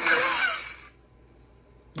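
A crash from a film clip's soundtrack as a wall telephone is pulled down, fading out over about a second. It is followed by a short quiet and a sharp gasp right at the end.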